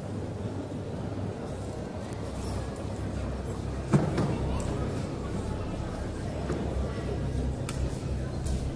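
Indistinct background chatter with a sharp clink about halfway through and a few lighter clinks after it: a metal spoon knocking against a ceramic coffee cup.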